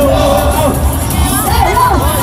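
Loud dance music over a sound system with a steady bass beat, and a crowd shouting and cheering over it.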